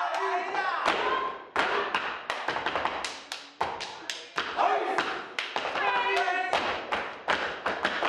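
Step dancers performing: a dense run of foot stomps, hand claps and body slaps on a stage floor, with voices calling out among the beats.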